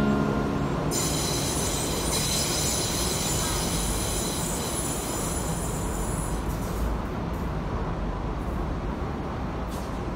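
Electric commuter train running on curved track, its wheels squealing in a cluster of high, steady tones from about a second in until past the middle, over a low rumble that slowly fades as the train moves away.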